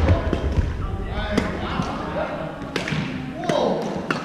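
Badminton play in a large gymnasium: a heavy footfall on the wooden floor at the start, then a few sharp racket strikes on the shuttlecock, with players' voices echoing in the hall throughout.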